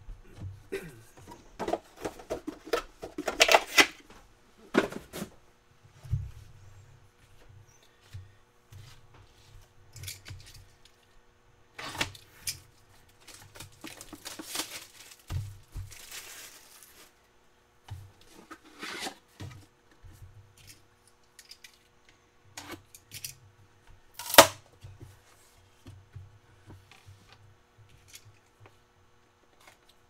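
A sealed box of trading cards being opened by hand: clear plastic wrap torn off and crinkled, with scattered taps and clicks of cardboard and plastic being handled. One sharp click late on is the loudest sound.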